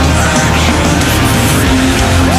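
Loud, heavy rock music in an instrumental passage with no singing: dense and distorted, with steady low notes and sliding, screeching high pitches.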